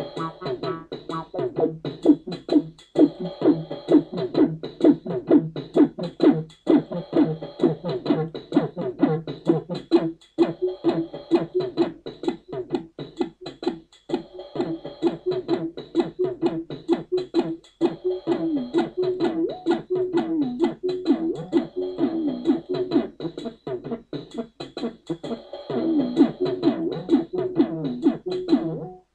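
d-lusion Rubberduck, a software TB-303-style bass synthesizer, playing a fast looping pitched bass line over a drum-machine beat, with many quick repeated notes and hits each second.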